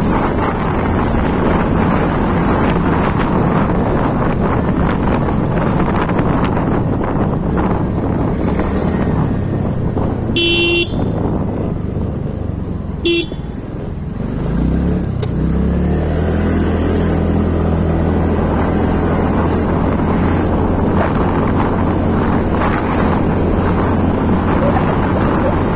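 Wind rushing over the microphone and the running noise of a TVS Ntorq 125 scooter under way. A horn beeps twice near the middle as the scooter slows. The engine note then rises as it speeds up again.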